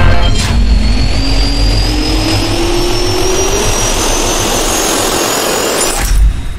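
Jet-engine spool-up sound effect: a steady roar with a high whine and a lower tone both rising slowly in pitch. It cuts off suddenly at the end.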